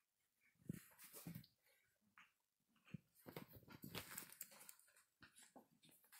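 Faint small noises from a baby long-tailed macaque clambering on a person and mouthing and tugging at her shirt sleeve. There are a few short isolated sounds in the first half and a busier stretch of scuffling around the middle.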